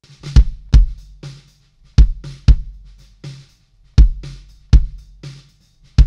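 A recorded drum kit beat playing back, with the kick drum loudest in a repeating pattern of strong low hits and fainter snare and hi-hat hits between them. It is a kick drum track being boosted around 50 Hz on the low end with an API 550B-style EQ plugin.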